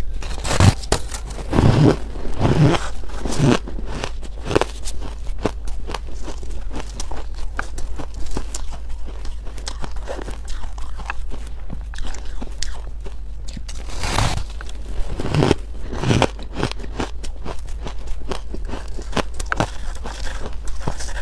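Bites and chewing crunches into a crumbly block of purple ice: a run of loud crunches about once a second in the first few seconds, softer crackling between, and another run of crunches about two thirds of the way through. A steady low hum sits under it.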